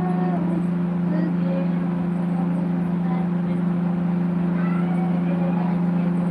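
A steady low machine hum that holds one pitch without change, with faint voices in the background.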